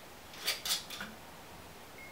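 Screw cap being twisted off a glass liquor bottle: two short rasping clicks about half a second in, then a fainter click.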